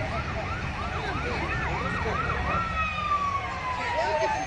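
Emergency vehicle siren yelping rapidly, its pitch sweeping up and down about three to four times a second, with a long tone gliding slowly downward in the second half.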